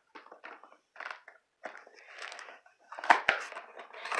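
A hand reaching into and working a long cardboard kit box: scattered rustles and scrapes of cardboard, with a sharper knock about three seconds in.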